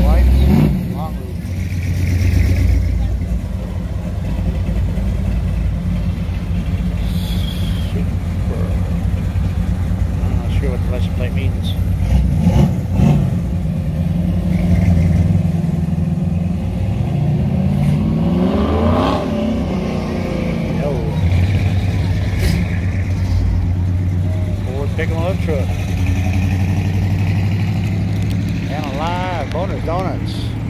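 Classic car engines running at low speed as cars roll out of a lot. About two-thirds of the way in, one engine's pitch rises and falls as a car accelerates past.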